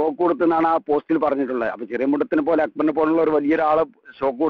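Speech only: one voice talking continuously, with short pauses.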